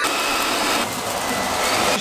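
Hand-held electric hair dryer running steadily, blowing air onto burning charcoal in a fornacella grill to fan the coals hot. A steady rush of air with a faint whine; the high hiss drops a little about a second in.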